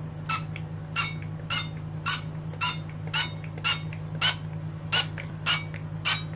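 Pump-action Frylight 1-cal cooking oil spray bottle being pumped into a muffin tray: a rapid run of short spritzes, about two a second, each with a faint squeak from the pump.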